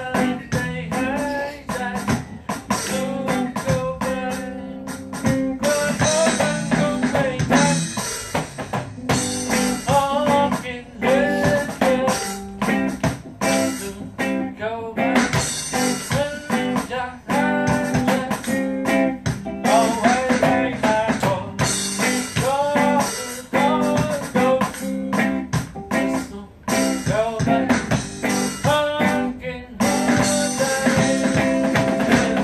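Guitars playing in reggae style: a lead line with bent notes over a steady chord part, with a regular rhythmic beat.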